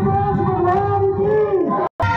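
A singing voice holding one long note, heard over loudspeakers, with a low pulsing beat underneath; it cuts off suddenly just before the end.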